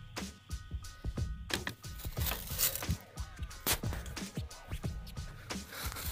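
Irregular clicks, scrapes and rustles of handling close to the microphone while the phone is moved about. There is no gunshot.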